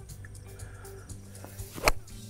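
Golf iron striking a ball off the turf: one sharp crack near the end, over quiet background music.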